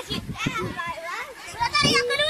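Children's high-pitched voices talking and calling out, with no clear words, loudest near the end.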